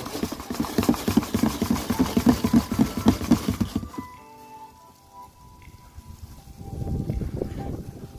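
A clear plastic tub holding dubia roaches, frass and egg crate being shaken: a fast, dense rattling rustle for about four seconds. It stops, then starts up again just before the end.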